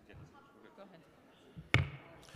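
A single loud, sharp knock near the end, over a faint murmur of people talking in a large hall.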